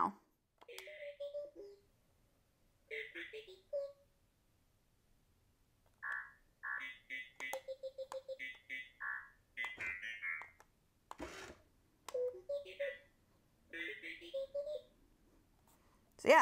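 Droid Depot R-series astromech droid toy with a First Order personality chip installed, playing electronic beeps, chirps and warbling whistles through its speaker in several bursts with short pauses, including quick runs of beeps and a brief hiss about eleven seconds in.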